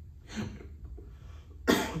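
A man coughs once into his hand near the end, picked up close by the handheld microphone he is speaking into.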